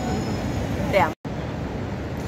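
Steady low rumble of city street traffic, with a short vocal sound just before a second in; the sound drops out completely for a split second right after it.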